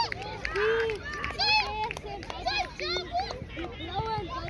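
Children shouting and calling out over one another, many high-pitched voices overlapping without a break.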